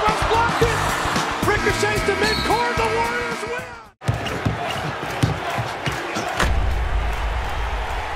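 Arena crowd noise and shouting over the last seconds of an NBA overtime, with a held horn-like tone, the game-ending horn, from about a second and a half in. After a sudden cut near the middle come a few basketball dribbles and a short, bass-heavy music sting.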